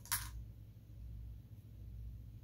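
Quiet room tone with a steady low hum, broken by one brief soft hiss just after the start.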